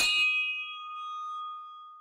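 Logo sting sound effect: a single bright bell-like ding struck at the start, its several ringing tones fading out over about two seconds.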